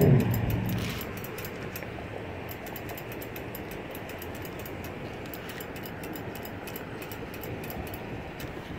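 Accessible pedestrian signal's push-button speaker ticking rapidly and steadily over a haze of road traffic; a passing vehicle fades out during the first second.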